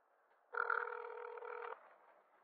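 Telephone ringback tone heard over the line through the phone's speaker: one steady ring about a second long, starting about half a second in and cutting off suddenly, as the call waits to be answered.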